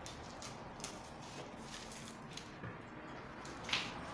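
Scissors cutting through brown pattern paper: faint, scattered snips and paper crackle, with a sharper rustle near the end.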